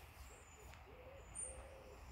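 Faint, low cooing bird calls, several drawn-out notes in a row.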